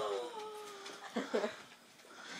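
A young woman's drawn-out, high-pitched squeal of excitement, falling slightly in pitch, followed about a second in by two short vocal sounds.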